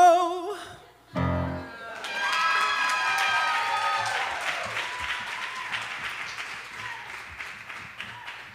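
A male singer finishes the song on a high note held with vibrato, which cuts off half a second in. A brief low chord from the accompaniment follows, then audience applause with cheers, fading toward the end.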